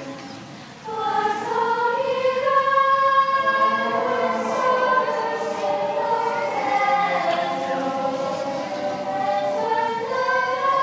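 A mixed group of young teenage voices singing together as a choir, holding long notes. After a short lull, a new phrase comes in about a second in.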